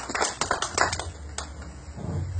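Congregation clapping in quick claps that thin out and die away over the first second and a half.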